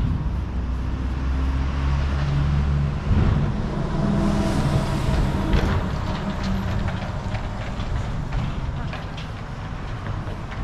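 Street sound dominated by a motor vehicle's engine running close by, a low hum whose pitch shifts up and down in the first few seconds, with scattered light taps later on.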